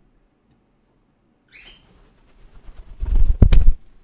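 A pet cockatiel's wings flapping close to the microphone as it flies onto a shoulder: a loud, short burst of rushing air noise near the end, after a faint brief sound about a second and a half in.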